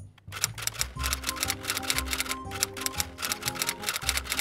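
A rapid run of typewriter key clacks, added as a sound effect, over background music with a steady bass line.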